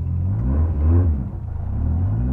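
Škoda 130 rally car's four-cylinder engine heard from inside the cabin, revved up and back down about half a second in, then rising again near the end as the car pulls away at low speed.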